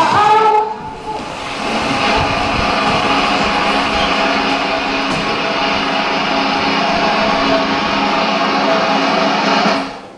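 A children's song cuts off within the first second, then a steady, even wash of audience applause follows with a constant hum under it, fading just before the end.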